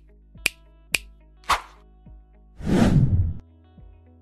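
Intro title sound effects: sharp snaps about every half second, a swish, then a louder whoosh lasting under a second about three seconds in, over faint music.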